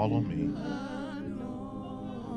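Gospel worship singing: voices hold long notes with a wavering vibrato over steady, sustained low chords.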